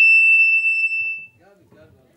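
Public-address microphone feedback: a loud, steady high whistle with fainter overtones that cuts off suddenly a little over a second in, leaving faint speech.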